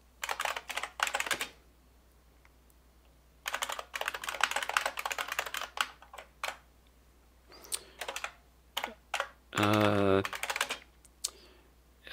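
Typing on a computer keyboard: rapid keystrokes in three bursts of a second to three seconds each, separated by short pauses. A brief voiced sound from the typist comes about ten seconds in.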